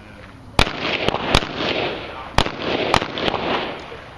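Handgun shots on an outdoor range: four loud shots at irregular intervals of about half a second to a second, with a couple of fainter sharp cracks between them, each followed by a short echoing tail.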